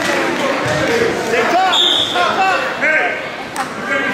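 Background chatter of several people's voices echoing in a large gym, overlaid with short high squeaks and a brief high tone about two seconds in.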